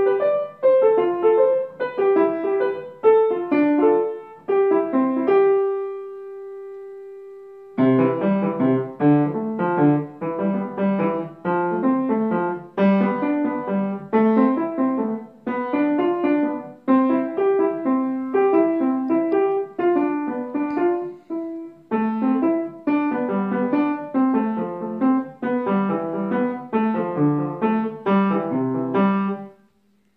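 Grand piano played by a young child, a simple melody picked out note by note at a steady pace. About five seconds in, one note is held and left to fade for a couple of seconds before the playing picks up again, and it stops just before the end.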